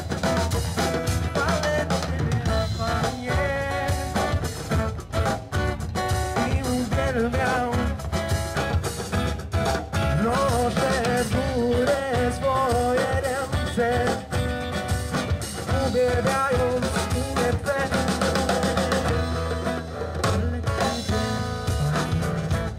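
A live band playing a song: a drum kit, electric guitars and an acoustic guitar, with a voice singing over them. The music runs steadily and loudly throughout.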